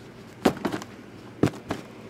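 Cardboard hockey card hobby boxes being handled and knocked on the table: two sharp knocks about a second apart, each followed by a couple of lighter taps.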